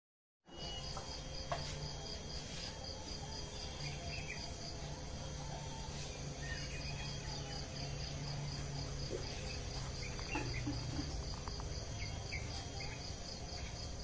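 Insects chirring steadily, one pulsing rapidly for the first few seconds, with scattered short bird chirps and a low steady hum underneath. The sound starts abruptly about half a second in.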